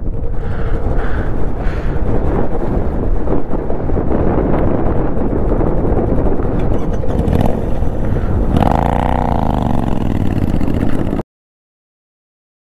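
Motorcycle riding off and running along the road, its engine under heavy wind rush on the microphone, with a rise and fall in engine pitch about nine seconds in. The sound cuts off abruptly near the end.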